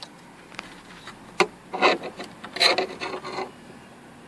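Handling noise from a plastic wiring connector and harness being moved about: a sharp click about a second and a half in, then rubbing and scraping in short spells.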